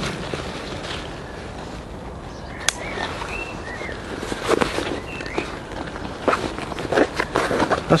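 Handling of British Army camouflage webbing: a yoke being clipped onto two side pouches, with nylon fabric rustling and plastic clip connectors being fastened. One sharp click comes a little before the midpoint, and a run of short clicks and rustles follows in the second half.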